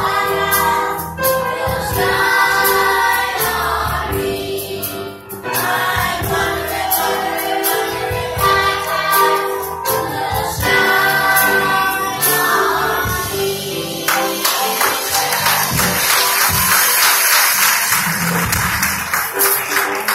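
Children's choir singing a gospel song; about fourteen seconds in the singing ends and applause takes over until the end.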